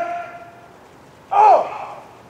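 A man's voice calling a drill command to the ranks: a long held word fades away in echo, then a short, sharp call comes about a second and a half in.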